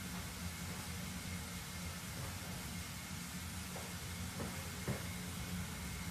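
Steady background hiss with a faint low hum: room tone, with two faint soft ticks about four and a half and five seconds in.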